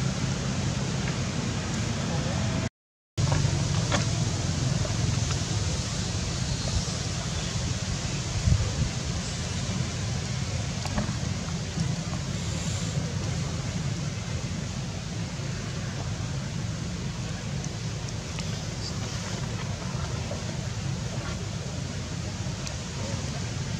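Steady low rumble of background noise, with a few faint clicks and a brief dropout to silence about three seconds in.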